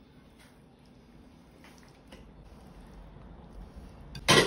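Faint, soft wet sounds and a few light taps as a metal ladle spoons thick tomato-and-onion sauce over pot roast in a glass baking dish.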